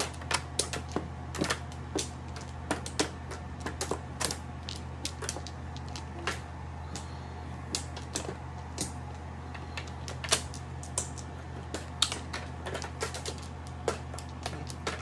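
Mahjong tiles clicking and clacking in quick, irregular succession as they are picked up, set down and knocked together on the table, over a steady low hum.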